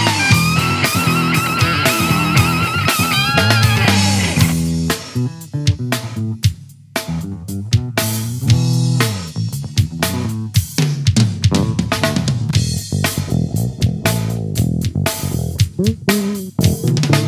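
Rock band playing an instrumental passage: electric bass and drum kit under a lead guitar line that wavers in pitch for the first four seconds. The lead then drops out, bass and drums carry on, the sound almost stops for a moment around seven seconds in, and the band then picks back up.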